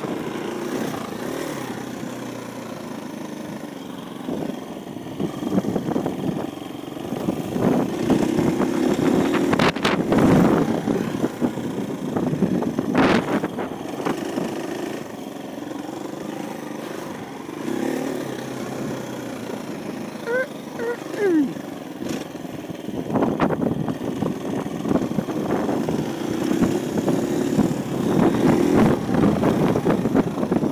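KTM 350 EXC-F single-cylinder four-stroke dirt bike engine running under way, its revs and loudness rising and falling as the throttle is opened and eased.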